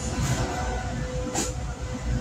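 Low rumbling background noise with a steady hum, picked up by a phone's microphone, and a short click about one and a half seconds in.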